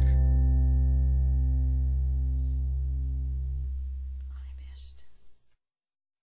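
The song's final held chord ringing out and slowly fading, with a deep bass note lasting longest, then cutting off about five and a half seconds in.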